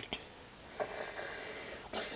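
Quiet room noise with no distinct sound, only a faint soft rustle about a second in.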